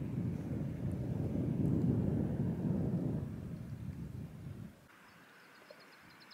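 Wind buffeting the microphone outdoors: an uneven low rumble that swells and then cuts off suddenly about five seconds in.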